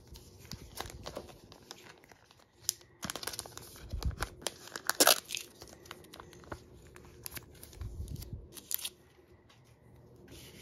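Clear plastic card sleeve crinkling and crackling as a trading card is handled and slid into it, in irregular rustles and clicks, the sharpest crackle about five seconds in. A couple of soft thumps from handling on the table.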